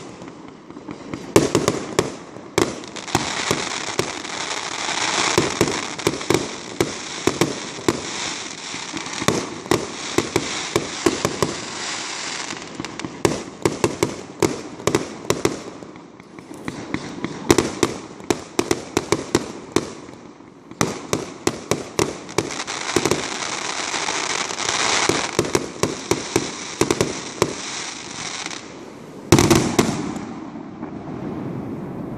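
Aerial firework shells bursting in quick succession: many sharp bangs over a steady hiss, with short lulls about halfway through and a loud bang near the end.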